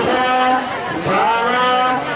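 Ritual chanting by a voice in short phrases, each rising and then held on one note, about one phrase a second.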